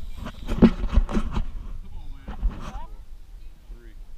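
A man laughing close to the microphone, with rumbling wind and handling noise on the mic, loudest in the first second and a half. Quieter voices follow.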